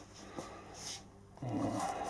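Quiet handling of a steel-spring hand gripper, with a light click, then a man's low voice starting in the last half second.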